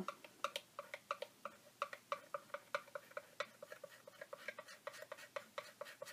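Steel palette knife rubbed and pressed over a paper sticker to set it in cold wax medium on a collage board, giving a run of quick light clicks, about four or five a second.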